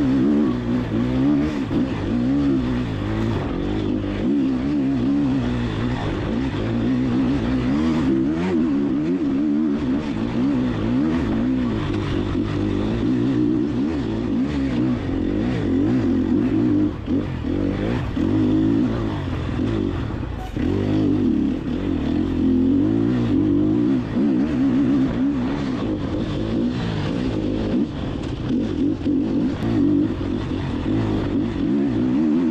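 Enduro motorcycle engine being ridden hard, its pitch rising and falling continually with the throttle, with a few short knocks along the way.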